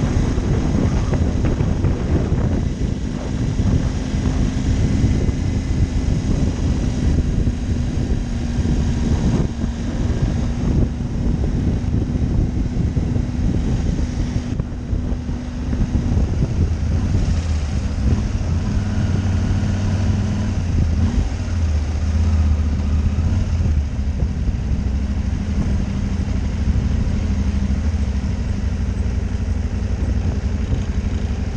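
Motorcycle engine running under way, heard from a camera mounted on the bike, with wind noise over the microphone. The engine note holds steady for the first half, then drops lower and becomes more uneven from about halfway, as the bike slows.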